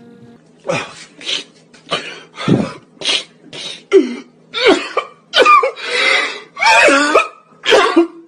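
A man sobbing hard: a run of short choked gasps about twice a second, which turn into longer wailing cries with a wavering pitch in the second half.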